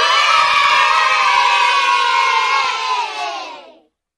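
A crowd of voices shouting and cheering together in one long cry that sags slightly in pitch and fades out just before the end.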